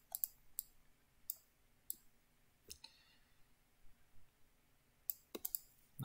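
Faint computer mouse button clicks, scattered and irregular, about eight in all, with a quick cluster near the end.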